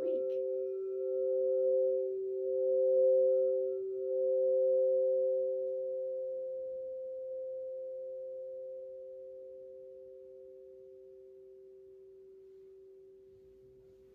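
Two 8-inch crystal singing bowls ringing together in two steady, pure tones. The higher bowl swells three times as the mallet plays it, then both tones fade slowly over the last several seconds.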